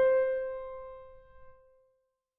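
A single high piano note, struck and left to ring, fading away over about a second and a half.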